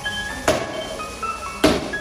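Two sharp strikes about a second apart, an arnis stick hitting a stacked-tire training dummy, over background music.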